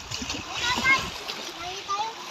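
Sea water splashing around people swimming and wading in the shallows. Several voices, children's among them, call out briefly about halfway through.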